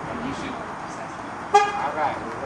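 A single short vehicle horn toot about one and a half seconds in: one steady pitch with a sharp start, over steady outdoor background noise.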